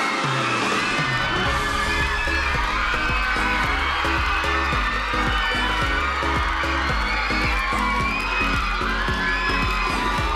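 A pop dance track with a heavy bass beat that kicks in about a second in, under a studio audience of fans screaming and cheering.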